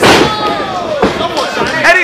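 A wrestler's body slamming onto the ring canvas: one loud thud at the very start, followed by voices.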